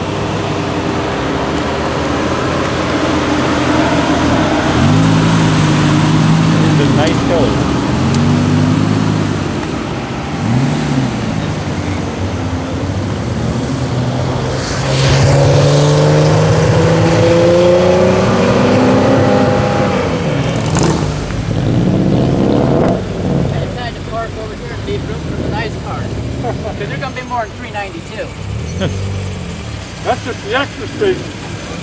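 Sports cars driving past one after another, among them a Lamborghini Gallardo and a classic air-cooled Porsche 911, their engines revving and accelerating with pitch rising and falling. The loudest pass comes about fifteen seconds in.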